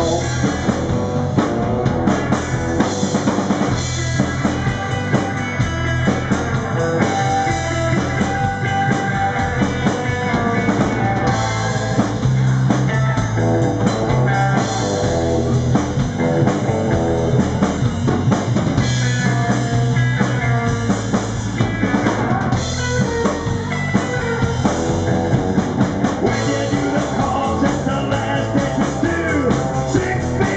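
Neo-rockabilly band playing live: upright double bass, electric guitar and drum kit, with a steady beat.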